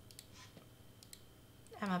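A few faint computer clicks over quiet room tone, made while ungrouping and selecting text on screen; a woman's voice starts near the end.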